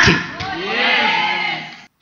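A drawn-out wordless vocal sound, a voice held for about a second and a half, rising and then falling in pitch, fading out just before the end.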